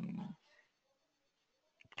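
The tail of a man's drawn-out hesitation sound, "uh", ending about a third of a second in. Near silence follows, with a faint click just before he speaks again.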